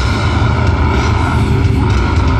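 Live metal band's downtuned, distorted guitars and bass holding a heavy low chord, a steady dense rumble with no clear drum hits. It is heard through a phone microphone in the crowd, loud and overloaded.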